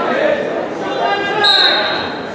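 Voices calling out in a large gymnasium during a wrestling bout, with a brief high, steady tone starting about one and a half seconds in.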